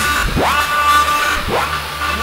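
Live band music: a lead line slides steeply up into a long held high note, then slides up again about one and a half seconds in, over a steady low bass.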